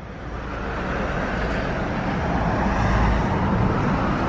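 A road vehicle driving past on the street, its engine and tyre noise growing steadily louder as it approaches.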